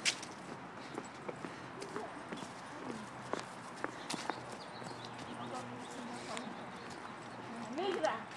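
Footsteps on pavement and a handheld phone being jostled while walking, heard as irregular clicks and scuffs, with a sharp click right at the start. Faint voices and outdoor background noise run underneath.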